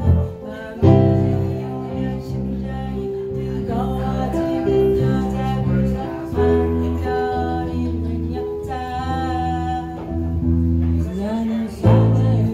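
A woman singing a slow melody while playing held low notes on an electric bass guitar, her voice rising into a wide vibrato about nine seconds in.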